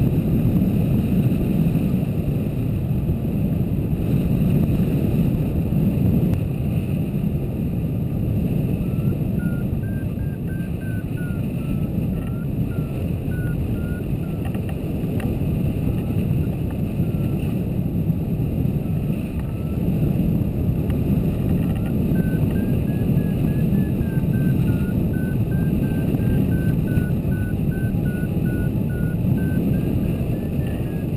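Steady rush of airflow buffeting the microphone of a camera on a hang glider in flight. A faint beeping tone that wavers up and down in pitch comes and goes under it from about a third of the way in.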